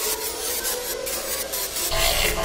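Sound effect for an animated logo reveal: a dense noisy texture broken by irregular pulses, with a faint steady tone beneath.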